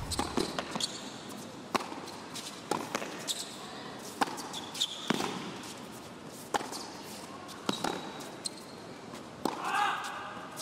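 Tennis ball being struck by rackets and bouncing on an indoor hard court during a rally, sharp single hits roughly a second apart, with a few short shoe squeaks on the court surface.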